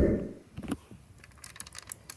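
A low rumble dies away in the first half second, then scattered light clicks and rattles of a plastic Power Rangers Megazord toy being handled and moved, with a small cluster near the end.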